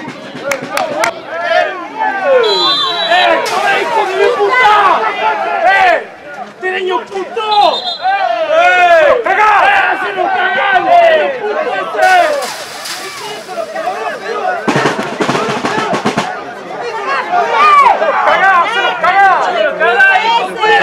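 Several men shouting at once on a football pitch, loud and overlapping. Two short high whistle tones come early on, and two brief bursts of rushing noise come in the second half.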